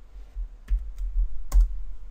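Computer keyboard keystrokes: three sharp clicks, the loudest about one and a half seconds in, over low thuds.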